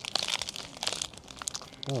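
Biting into and chewing a turkey sandwich on a sesame bagel, with cucumbers and sprouts, close to a clip-on microphone: a run of crackly crunches and clicks. A short "oh" near the end.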